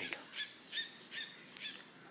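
A bird calling: four short, high notes repeated at an even pace, about two and a half a second.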